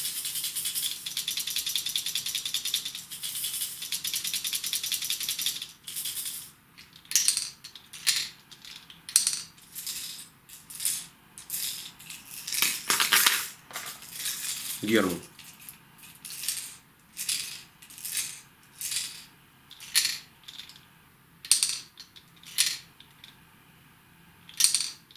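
Hard plastic deep-diving trolling wobblers (a Salmo Freediver and its replica) shaken by hand. The loose balls in the noise chamber rattle fast and continuously for about the first five seconds, then give single sharp clacks about one or two a second as the lure is tipped back and forth.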